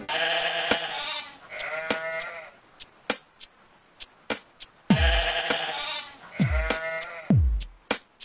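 Sheep bleating in two pairs: two bleats at the start, then two more a few seconds later, with a handful of sharp clicks in between.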